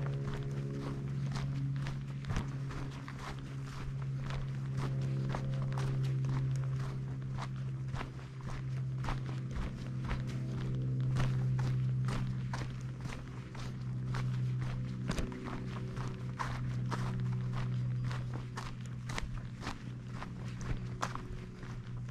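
A hiker's footsteps on a packed dirt forest trail, about two steps a second, over a low steady hum.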